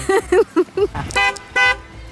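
A car horn tooting twice in quick succession, each toot short, amid short bursts of laughter.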